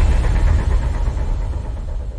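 Deep low rumble slowly fading away: the tail of a cinematic boom, an intro sound effect.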